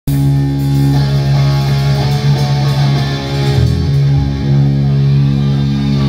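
Live Tex-Mex punk band playing loud, with electric guitar and bass. Moving notes for the first few seconds give way to a chord held and ringing through the second half, like the close of a song.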